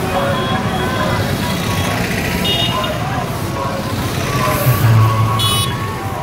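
Busy street noise: vehicle engines and traffic running under a crowd's voices, with a brief high tone about halfway through and a louder engine rumble near the end.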